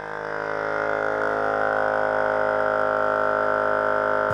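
A DIY beer-can thermoacoustic free-piston Stirling engine running, giving off a loud, steady, buzzing drone with a strong tone.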